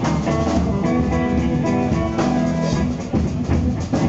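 Small live rock band playing an instrumental passage with no singing: archtop electric guitar, electric bass and drum kit.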